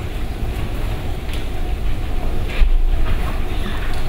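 Steady low rumble of background room noise picked up by the microphone, with a few faint soft clicks.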